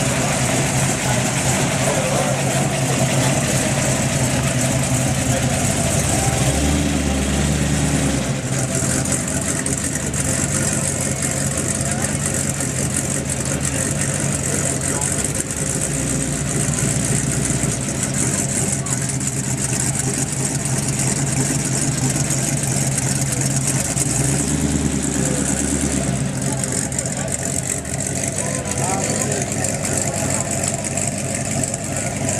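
Hot rod's engine running at low revs as the car moves off slowly, with a steady low note that swells louder twice, about seven seconds in and again about twenty-four seconds in.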